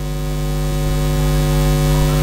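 Steady electrical buzz from a microphone and PA system: a mains hum with many overtones, holding one unchanging pitch.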